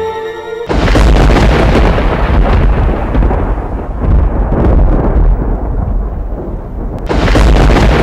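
Thunder sound effect: a loud, deep rumbling peal starts suddenly about a second in, cutting off the intro music, and rolls on. It eases briefly near the end, then swells into a second peal.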